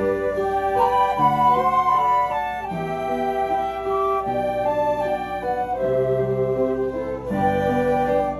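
A flute ensemble playing a slow piece in several parts, with held notes sounding together as chords that change every second or so.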